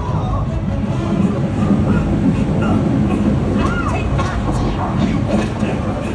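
Loud action soundtrack of a theater ride's animated show: a heavy, continuous low rumble with scattered crashes under music and brief character cries.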